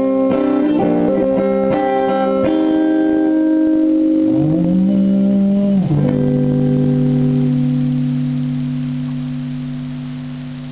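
Electric guitar played without vocals: quickly picked single notes, then a note that slides up in pitch and is held. About six seconds in, a low chord is struck and left ringing, slowly fading.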